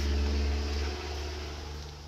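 A low, steady motor drone with a deep rumble, fading away toward the end.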